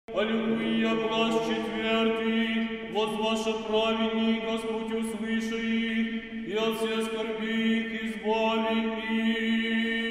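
Church chant: voices singing a slow hymn over a steady held drone note, in phrases that start afresh about every three seconds.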